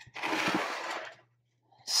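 A watercolour painting board sliding and turning on a wooden tabletop, a scraping rustle about a second long that fades out.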